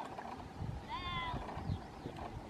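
A single short bird call about a second in: one note that rises and then holds, rich in overtones.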